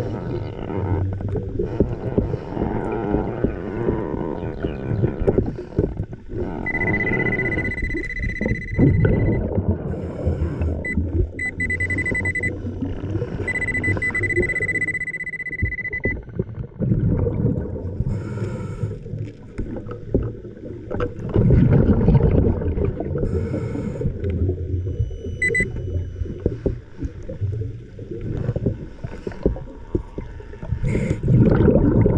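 Muffled underwater rumbling and water movement, heard with the microphone under water. A steady high electronic tone, typical of a metal detector's target signal, sounds three times for a few seconds each in the middle, and once briefly later.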